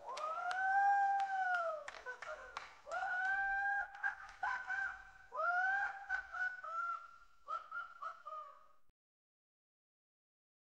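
The outro of a rap track: a single pitched tone that swoops up, holds and slides back down in several phrases, with scattered clicks between them, then stops abruptly about nine seconds in.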